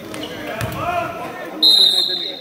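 Spectators' voices rising as a shot goes up, then a single shrill referee's whistle blast about a second and a half in, the loudest sound, calling a foul.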